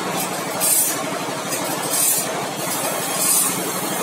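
Automatic band-saw blade sharpening machine running: a steady motor hum under a high grinding hiss that swells three times, about once every second and a quarter, as the grinding wheel sharpens the blade tooth by tooth.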